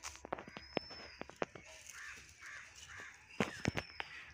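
Quiet outdoor ambience: birds calling, with a few harsh calls around the middle and a thin high whistle twice, over scattered sharp clicks and crackles.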